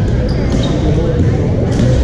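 Reverberant din of a busy badminton hall: many voices from the surrounding courts, with sharp hits of rackets on shuttlecocks, one about half a second in and another near the end.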